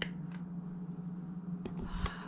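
Steady low hum with a few light clicks and a dull bump near the end: handling noise from the phone camera as it is picked up and carried across the kitchen.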